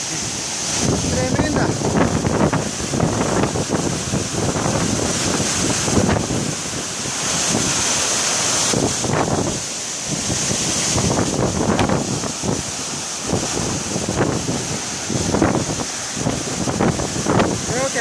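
Heavy rush of water from a 120-metre waterfall, heard from inside its spray, with spray and wind buffeting the microphone in uneven gusts.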